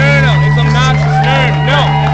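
Live rock band with an electric guitar solo of bent, wailing notes that rise and fall several times a second, over a steady held low note.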